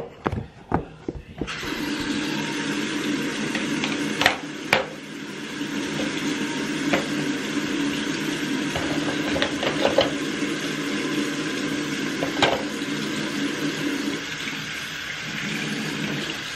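Bathroom sink tap turned on about a second and a half in, after a few clicks, and left running steadily into the basin with a low hum, so that the water runs hot before tooth-brushing. A few sharp clicks from handling things at the sink come over the running water.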